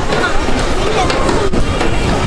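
Wind buffeting the microphone with a heavy, uneven rumble, over a jumble of distant voices and fairground noise.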